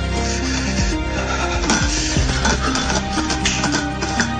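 Background music: sustained notes shifting in pitch over a steady low bass, with a few sharp percussive hits.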